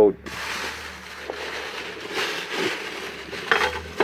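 Steady rustling and scuffing handling noise close to the microphone while a hand reaches among glass jars and bottles on a shelf, with a few faint ticks.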